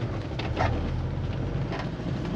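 Motorhome engine running at low speed with road noise, heard from inside the cab: a steady low hum with a few light rattles.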